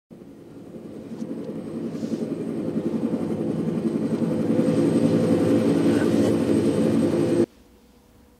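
Helicopter sound effect played in the theatre: a rapidly fluttering low rumble that grows steadily louder, as if a helicopter is approaching overhead, then cuts off suddenly near the end.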